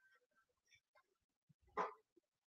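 A single short, faint dog bark near the end, against near silence.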